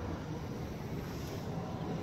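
Kawasaki Vulcan 1700 V-twin idling through Cobra Speedster exhaust pipes with slash-cut tips: a steady low rumble.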